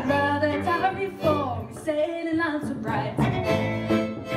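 A woman singing a folk song live, with guitar and fiddle accompaniment.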